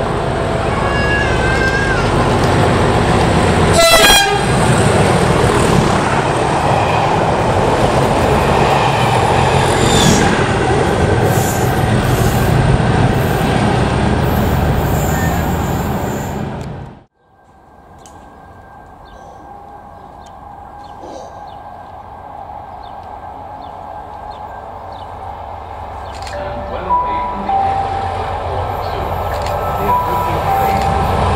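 A pair of Colas Rail Class 37 diesel locomotives run through a station at speed. The two-tone horn sounds over the first couple of seconds, then the loud engine and wheel noise of the passing train carries on for about 17 seconds and cuts off abruptly. After that a quieter approaching train builds, and a two-tone horn starts sounding near the end.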